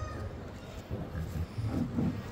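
A goat bleating once, briefly, near the end.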